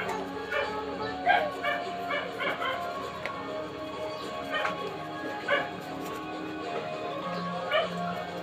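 Music playing in the background, with a dog yapping over it in quick runs of short calls.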